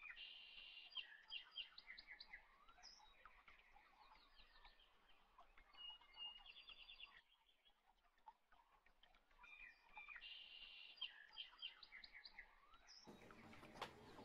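Faint birdsong: quick chirping trills in short phrases, one burst at the start and a similar one about ten seconds later, over near silence. A broader background noise rises near the end.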